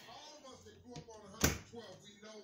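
A closet door being shut, giving one sharp knock about a second and a half in.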